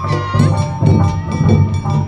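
Awa odori accompaniment music played live: taiko drums beating a steady rhythm under a high, sliding bamboo-flute melody.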